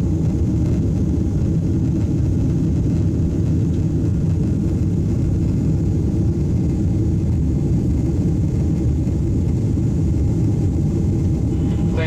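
Steady low rumble of a Boeing 777's jet engines and rushing air, heard inside the passenger cabin as the airliner climbs after takeoff.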